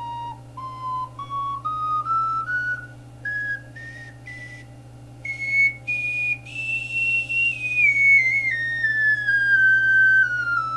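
A 12-hole plastic Focalink Soprano C ocarina played up its range one note at a time from the low A, reaching and holding the top note about seven seconds in, then running back down the scale more smoothly.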